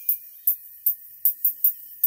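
Music played through a pair of small paper-cone treble tweeters fed through a crossover capacitor. The sound is thin and bass-less, mostly sharp cymbal-like percussion hits, about three a second.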